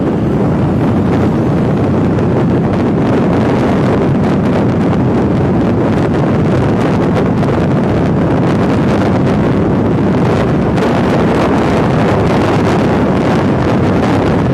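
Loud, steady rush of wind buffeting the microphone of a camera carried on a moving motorcycle.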